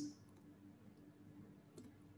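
Near silence with a few faint computer clicks, the clearest near the end, as the presentation moves on to the next slide.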